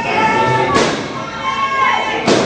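A single sharp thud of an impact in a wrestling ring about three-quarters of a second in, amid men's voices.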